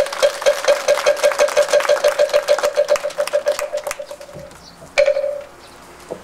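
Moktak (Buddhist wooden fish) struck in a roll that speeds up and grows fainter until it fades out, then one last single stroke about five seconds in.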